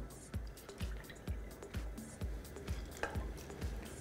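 Faint background music with a steady low beat, under skim milk being poured from a glass jug into a measuring cup and into a saucepan, with dripping.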